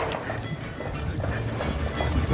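Folklórico zapateado footwork: dance shoes stamping in a quick run of heel and toe strikes on a hard floor, over recorded music.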